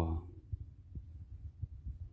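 Faint low thumps and rumble of handling noise from a handheld phone being moved over papers, with a few soft knocks.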